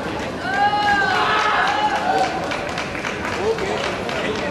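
A man's long drawn-out shout, held for about a second and a half, over the echoing din of a crowded sports hall, with scattered sharp taps and snaps.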